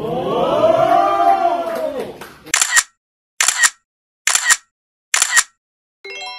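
Several voices rise and fall together for about two seconds, then four camera shutter clicks come evenly, just under a second apart, with dead silence between them.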